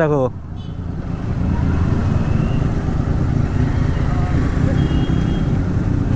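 Motorcycle engine running while the bike rides along, growing louder over the first two seconds and then holding steady.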